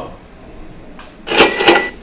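Cash-register sound effect from a PowerPoint slide animation as a new bullet point appears on the slide. It is a short clatter with a ringing bell tone, starting about a second and a half in and lasting about half a second.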